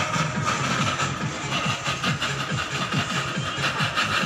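Jeweller's gas soldering torch burning steadily over a clay melting dish.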